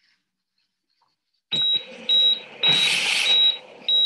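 High-pitched hospital heart-monitor beeps at a steady pace, about one every 0.6 s, starting about a second and a half in. A loud rush of hiss runs under the middle beeps.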